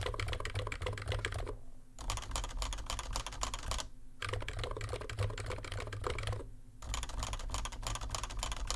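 Fast typing on an ABKO K935P V2's Topre-clone capacitive switches, in runs of key clicks broken by three short pauses. The switches have factory-fitted silencing rings, so the upstroke lacks the rattle of stock Topre. Near the end the typing moves to a Topre Realforce for comparison.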